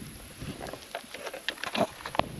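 Light clicks and rustling from hands handling a small plastic container, a few sharp clicks in the second half.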